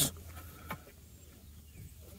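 Quiet outdoor ambience with a low steady hum and one faint click a little under a second in.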